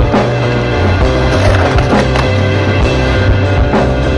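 Rock music with a steady drum beat, with a skateboard rolling on concrete heard under it.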